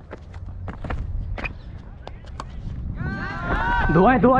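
Footsteps and a low wind rumble on a helmet-mounted camera microphone, with a few sharp clicks. About three seconds in, a player's loud shouted call starts.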